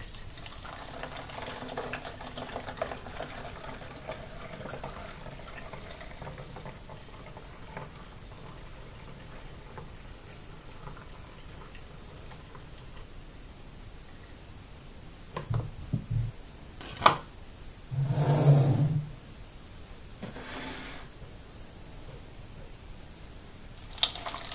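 Cloudy yeast slurry poured from a large plastic bottle through a plastic funnel into a plastic bottle, a steady trickle of liquid that is plainest in the first few seconds and then fades. A few knocks and a short, louder burst of noise come about three-quarters of the way through.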